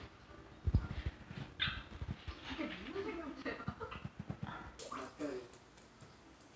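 Small dog whimpering and whining while it begs for food, after a few low knocks in the first two seconds.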